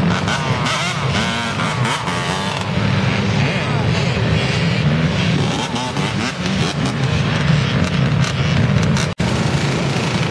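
Many ATV and dirt-bike engines running and revving at once, with a crowd's voices over them. The sound cuts out for an instant about nine seconds in.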